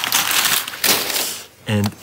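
Crumpled brown kraft packing paper crinkling and rustling as it is pulled out of a cardboard box, dying away after about a second and a half.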